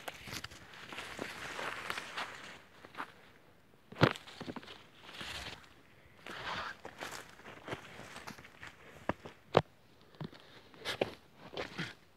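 Footsteps crunching irregularly through dry leaf litter and sticks, with a few sharp snaps among them.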